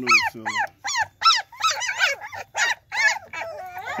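Young German shepherd puppies whimpering and yelping in a rapid string of short, high-pitched cries, several a second, some of them overlapping.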